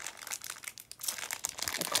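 Clear plastic packaging of a die-cut paper tag crinkling as it is handled, a run of irregular crackles that gets busier about halfway through.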